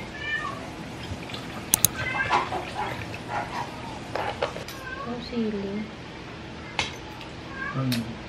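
An animal calling several times, short cries that rise and fall in pitch, with two sharp clicks a little before two seconds in.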